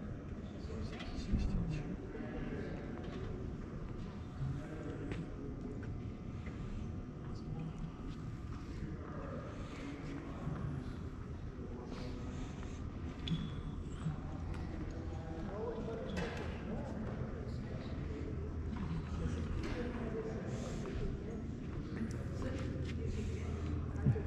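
Background of a large hangar: distant, indistinct voices and faint footsteps and knocks on the concrete floor. A steady low hum grows stronger in the second half.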